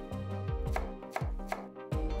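A chef's knife chopping fresh coriander leaves on a wooden cutting board: a series of sharp knife strikes against the wood, a few each second, at an uneven pace.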